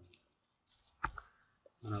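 A couple of quick, sharp computer clicks about a second in, from the keyboard or mouse used to open a new line in the code editor.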